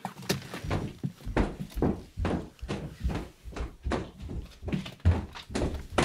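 Irregular knocks and thumps, about a dozen over six seconds, of a person getting up and moving about the room between lines of talk.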